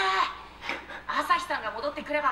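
Speech with a woman's brief chuckle: mostly Japanese dialogue from the anime episode playing, which picks up again about a second in.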